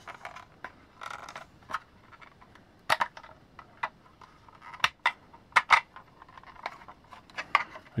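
Hard plastic parts of a vintage G.I. Joe toy vehicle clicking and knocking as they are handled and pressed together: scattered sharp clicks, loudest about three, five and six seconds in.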